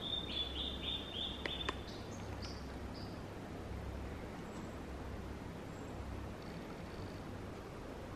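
A small forest songbird calling: a quick run of short high notes in the first two seconds, then a few scattered fainter notes, over a low steady rumble of outdoor ambience.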